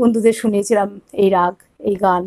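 A woman speaking in Bengali in short bursts of syllables.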